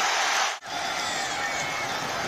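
Stadium crowd noise at a football game, steady throughout, cutting out briefly about half a second in.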